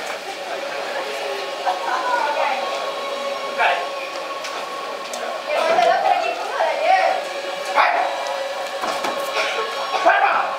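Voices calling out in a large hall, loudest from about halfway on, over a steady hum.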